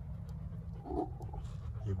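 A dog panting close to the microphone, with a short sound from the dog about a second in, over a steady low rumble.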